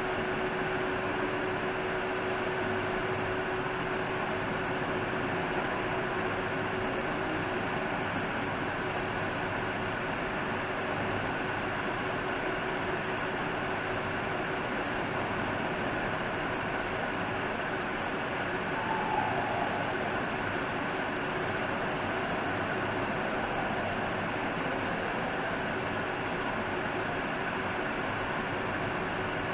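Steady background noise, an even hiss with a faint hum, and faint high ticks about every two seconds.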